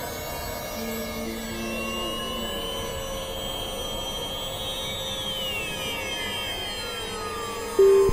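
Experimental electronic synthesizer drone music: steady held tones, with several high tones sliding downward together in the second half. A much louder sustained note cuts in just before the end.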